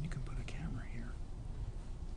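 Faint, low indistinct speech, close to a murmur, picked up by courtroom microphones over a steady low hum.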